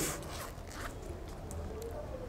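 Faint zipper and rustling as a zippered Bible cover is opened and its pages handled: a few soft, short scrapes.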